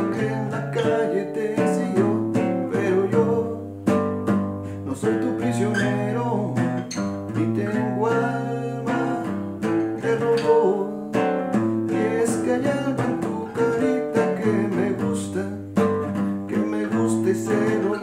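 Acoustic guitar strummed in a waltz-like accompaniment rhythm, changing chords (C, D7) in the key of G.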